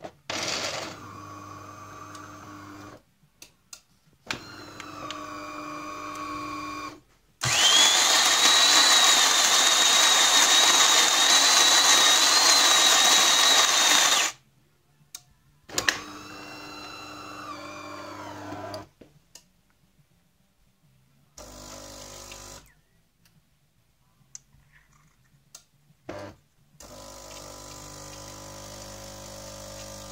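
AEG Caffè Silenzio bean-to-cup espresso machine running a brew cycle: a few short motor runs, then a loud steady grinder run of about seven seconds with a high whine, more short motor runs, and a quieter steady pump run near the end as coffee pours.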